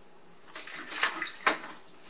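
A cup of milk poured into a mixing bowl: a short splashing pour lasting about a second, with two sharp clicks near the middle.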